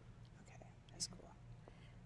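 Near silence: faint room tone, with a single short, sharp click about a second in.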